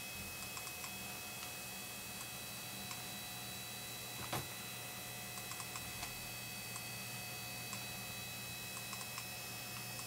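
Faint, scattered clicks of a computer mouse as clips are double-clicked one after another, with one louder click a little over four seconds in, over a steady electrical hum.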